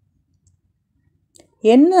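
Near silence with a couple of faint short clicks, then a person's voice starts speaking near the end.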